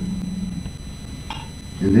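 A man's voice holding a drawn-out hesitation sound that trails off, then a low steady room hum with one brief soft noise, and his speech starting again near the end.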